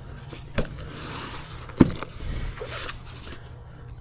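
A fabric-covered folding solar panel being handled and folded: soft rustling and scraping of its cloth cover, with two light knocks, one about half a second in and one about two seconds in.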